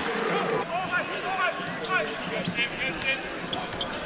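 Court sound from a basketball game: a ball bouncing on the hardwood floor, with voices in the arena underneath.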